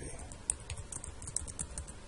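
Computer keyboard typing: a quick run of about ten keystrokes.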